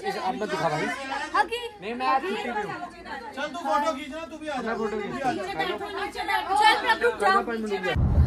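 Several people talking over one another, adults and children, in a room.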